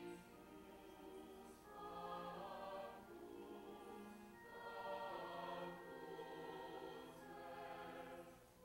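Mixed chamber choir singing a classical piece in long held phrases with short breaks between them, accompanied by cello.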